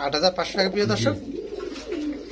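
Domestic pigeons cooing, with voices in the background.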